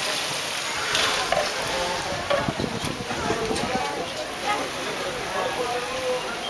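Busy pedestrian street: passers-by talking in the background over a steady wash of outdoor noise.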